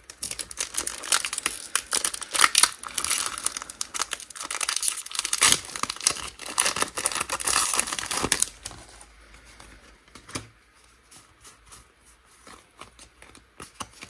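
Foil Pokémon TCG booster pack wrapper being torn open and crinkled as the cards are pulled out. The crackling is dense for about eight seconds, then drops to faint rustles and ticks.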